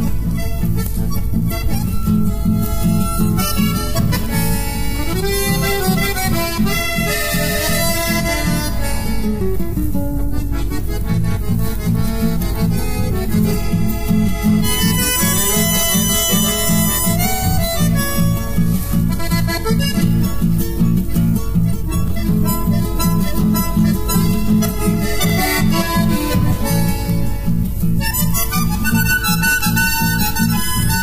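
Instrumental chamamé played by accordion and bandoneón carrying the melody over guitars, with a steady, even rhythmic pulse in the low range and no singing.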